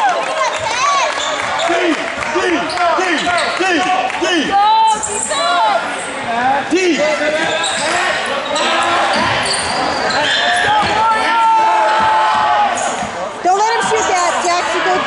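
Basketball game play on a gym floor: a basketball being dribbled and many short sneaker squeaks on the hardwood, with crowd voices in the echoing gym.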